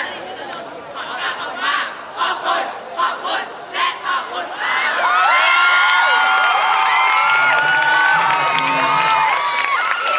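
A crowd of schoolchildren giving short, scattered shouts, then about five seconds in breaking into loud, sustained high-pitched cheering and screaming from many voices at once.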